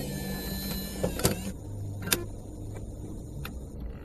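A low, steady rumbling noise with a few sharp clicks spread through it and a thin whine in the first second, with no beat or melody. It is the mechanical-sounding tail of a drum and bass track once its electric-piano passage has stopped.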